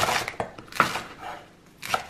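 Chef's knife chopping a romaine lettuce heart on a wooden cutting board: three cuts about a second apart.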